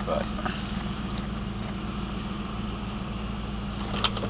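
The 1988 Ford Mustang GT's 5.0-litre V8 idling steadily through its single exhaust, heard from inside the cabin. It runs evenly, which the owner calls running very well.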